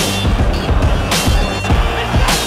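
Background music: an electronic track with a heavy, steady beat, deep bass notes and a cymbal-like hit about once a second.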